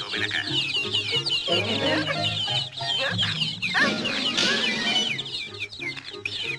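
A crowd of cartoon baby chicks peeping continuously, many short, high chirps overlapping, over a cartoon music underscore.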